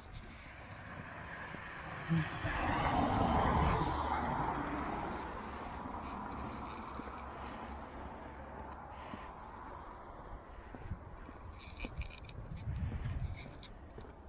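A vehicle passing on the road beside the path: a rush of noise that swells to its loudest about four seconds in and then fades away over the next few seconds. A few short, sharp sounds come near the end.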